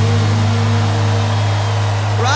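A live rock band holding one steady, sustained low chord near the close of the ballad, with no drums or vocals over it.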